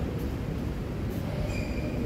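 Steady low rumble of a large indoor sports hall, with a short high-pitched squeal about a second and a half in, a sports shoe squeaking on the synthetic court floor.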